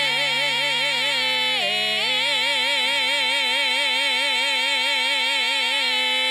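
A man and a woman singing a jota duet, holding long notes together with wide vibrato. The held note drops to a lower pitch about a second and a half in and is held again, over a low steady accompanying note that stops about halfway.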